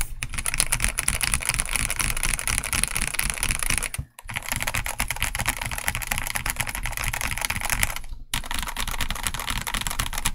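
Fast typing on a RoyalAxe L75 mechanical keyboard with Gateron G-Pro Yellow linear switches and thick PBT keycaps: a dense run of keystroke clacks, broken by two brief gaps about four and eight seconds in.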